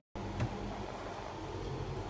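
Microwave oven running with a steady low hum, with a faint click about half a second in.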